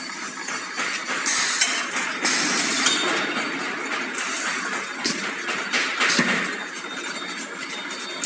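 Metal clattering and clinking from a running rotary waffle cone baking machine, with irregular knocks of its steel baking plates and cone-rolling parts over a steady noisy hiss.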